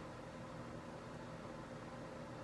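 Faint steady room tone: a low electrical-sounding hum with a soft hiss.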